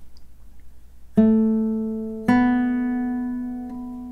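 Masaki Sakurai nylon-string classical guitar playing two single plucked notes about a second apart, A and then a slightly higher open B string, each left to ring and fade. The two notes are the pickup leading into an A minor opening bar.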